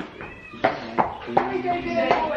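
A person's voice, coming in about half a second in after a brief lull, with some drawn-out, held notes.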